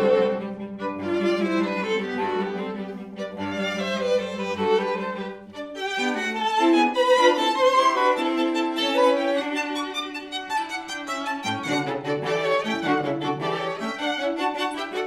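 Live string quartet of two violins, viola and cello playing classical chamber music, sustained low cello notes under the upper strings. About five and a half seconds in the music dips briefly, then the violins take up a busier, higher line.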